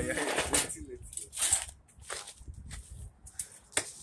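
People's voices making short sounds with no clear words, then a single sharp knock near the end.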